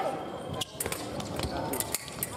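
Fencers' shoes squeak on the piste. Then, from about half a second in, comes a quick run of sharp clicks and a thud as the two foil fencers' blades meet and their feet stamp in an attack.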